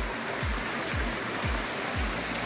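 Water from a stacked-stone pool waterfall spilling into the pool, a steady rush, under background music with a low kick drum beating about twice a second.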